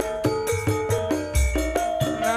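Live band music with a steady percussion beat, tambourine and held melody notes, in the style of Javanese dangdut koplo or campursari.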